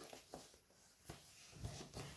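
Faint handling sounds of a cardboard pipe box in cotton-gloved hands: a few soft knocks and rustles as the closed box is settled and turned.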